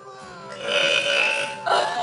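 A young woman's long, loud burp, starting about half a second in and lasting around a second, followed by a sudden burst of laughter.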